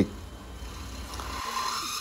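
DeWalt DCD999 brushless cordless drill boring a 13 mm bit through 1.7 mm-thick hollow steel tube at speed 2: a steady grinding run, with a whine that rises in pitch over the last second as the bit breaks through.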